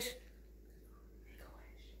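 A hushed room, close to silence, with faint whispering.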